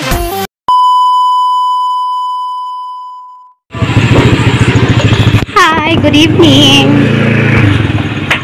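A single electronic beep that fades away over about three seconds. Then a motor scooter's engine starts running at idle, with high wavering cries over it a couple of seconds later.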